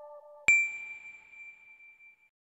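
A soft synth music tail fades out, then about half a second in a single bright electronic ding strikes with a sharp attack and rings out, fading away over a second and a half: a logo-reveal chime.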